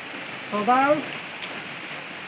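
Steady rain falling, with one short spoken word about halfway through.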